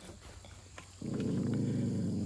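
A dog's low, drawn-out grumbling groan, starting about a second in, lasting about a second and a half and dropping in pitch as it fades.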